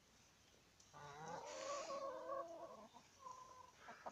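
Domestic chicken giving a drawn-out, slightly wavering call of about two seconds, followed near the end by a brief shorter call.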